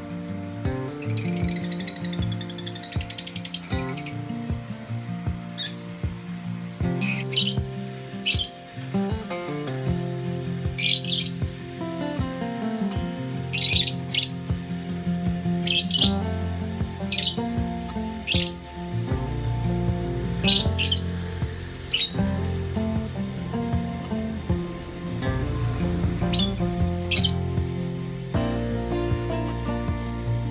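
Caged lovebirds giving short, sharp, high chirps, about fifteen scattered through, some in quick pairs, with a brief run of chattering near the start, over background music.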